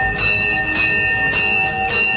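Brass temple bell rung by hand, struck repeatedly about twice a second, each stroke ringing on clearly into the next.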